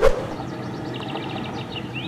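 Outdoor ambience: a steady low rumble, with a small bird trilling briefly about a second in.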